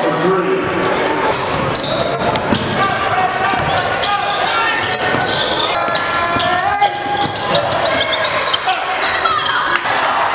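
Live indoor basketball game audio: a ball bouncing and short impacts on the hardwood court under a steady hubbub of overlapping voices and shouts from players and spectators in an echoing gym.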